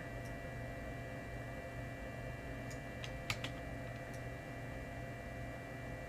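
Steady low hum of a computer setup picked up by the microphone. About three seconds in, a few faint clicks come from the computer's keyboard.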